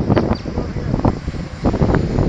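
Wind gusting on the microphone, a heavy uneven rumble, with a few short bumps and rustles from the handheld camera being moved.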